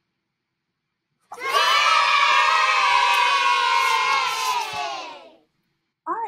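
A group of children cheering together: one long cheer of many voices that starts about a second in and fades out near the end.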